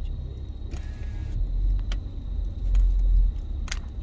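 Low rumble of a car's engine and tyres heard from inside the cabin as it creeps through a snowy parking lot, briefly louder about three seconds in, with a short hiss about a second in and a few light clicks.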